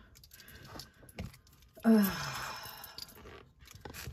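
A few faint clicks of metal costume jewelry being handled on a table. About two seconds in, a drawn-out spoken 'uh' trails into a breathy exhale.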